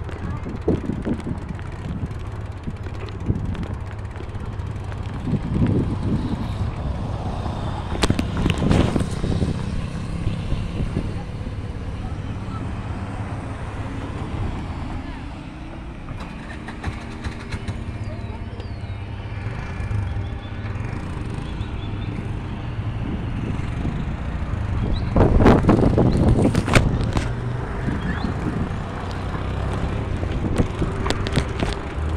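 Rumble and wind on the microphone of a handlebar-mounted phone while riding a bicycle through street traffic, with clattering knocks around eight seconds in and again near the end as the bike goes over bumps. About halfway through, a motor vehicle's engine hum rises and holds for several seconds.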